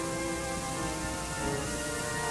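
Pipe organ of Mitchell Hall, recorded on old tape, playing sustained chords that move to new notes about a second and a half in, under a steady tape hiss.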